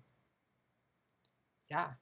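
A pause in a man's speech: near silence with one faint short click just past halfway, then he says "yeah" near the end.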